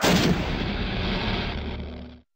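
A trailer sound-effect boom: a sudden blast-like hit with a low rumbling tail that slowly fades, then cuts off abruptly.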